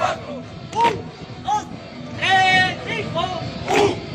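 Men's voices shouting drill calls during an exercise routine with rifles: short calls, then one long shout about two seconds in, then another short call near the end.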